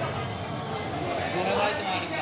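Indian Railways sleeper coaches of an arriving express rolling slowly past, their wheels giving one steady high-pitched squeal under braking.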